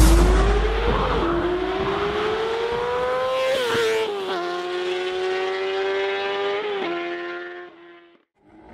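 Motorcycle engine accelerating through the gears: the revs climb, then drop at each of three gear changes, and the sound fades away near the end.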